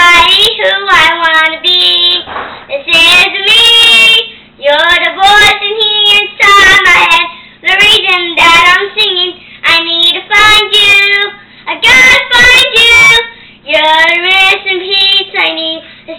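A young girl singing unaccompanied, in sung phrases of a second or two with short breaks for breath between them.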